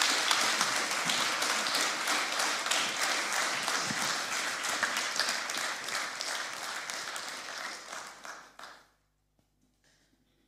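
Congregation applauding, the clapping slowly dying down, then cutting off abruptly near the end.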